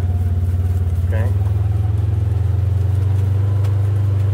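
Side-by-side utility vehicle's engine running with a steady low hum while it drives slowly across a pasture, heard from inside the open cab.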